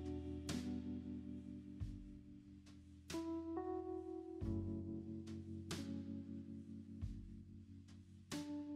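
Background music: plucked guitar notes over a low, held bass.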